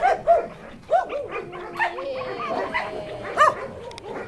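Dogs barking in short, high yips several times, with long, drawn-out whines held between the yips.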